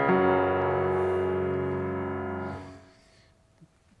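Grand piano: one chord struck and held, ringing for about two and a half seconds before it is cut off sharply as the keys or pedal are released.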